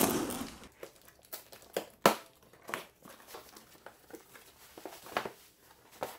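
Box cutter slitting the packing tape on a cardboard box in a brief ripping rush, then cardboard flaps being pried open. Scattered rustles and sharp snaps of cardboard follow, the loudest about two seconds in.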